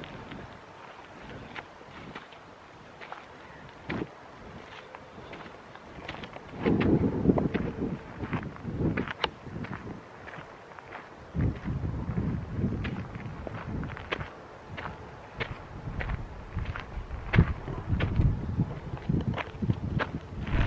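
Footsteps on the dirt and gravel of an old railroad bed, at a steady walking pace. Gusts of wind buffet the microphone about six seconds in and again through the second half.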